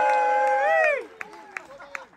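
Accordion holding a chord of several steady notes, which slide down and cut off about a second in. Then faint crowd noise and scattered claps.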